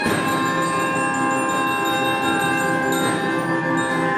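A small student band of trombone, alto saxophone, trumpets and electronic keyboards playing a held chord, with the notes changing about three seconds in.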